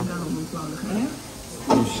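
Indistinct voices talking, with a short loud sound near the end.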